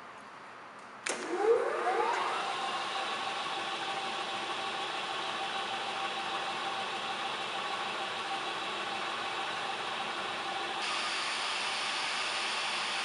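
The electric drive motor of a V & O Super 25-ton punch press switches on abruptly about a second in, its whine rising over a second or so as it brings the flywheel up to speed, then running steadily with a constant hum.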